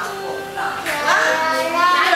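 A young child singing karaoke into a microphone, holding a note in the second half.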